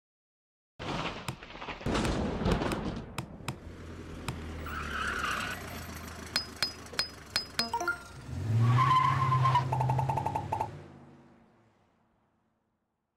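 Sound-effects sequence for an animated logo intro: several sharp hits, then a vehicle driving in, a quick run of evenly spaced clicks, and a low drone that fades out near the end.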